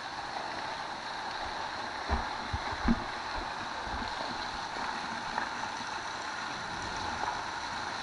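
Shallow stream running with a steady rushing sound, and a few low knocks about two to three seconds in.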